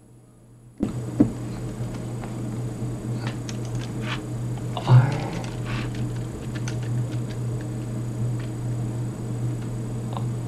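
Near silence, then about a second in the audio cuts back in on a changed input, the sign of a MIDI controller button having switched the audio routing: a steady low hum with scattered clicks and taps and a louder thump about five seconds in.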